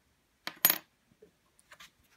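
Metal coins clinking as they are handled on a tray: two quick clinks about half a second in, the second the loudest and ringing briefly, then a few faint ticks near the end.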